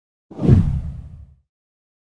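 A single deep whoosh sound effect from an animated logo intro, swelling up quickly about a third of a second in and dying away within about a second.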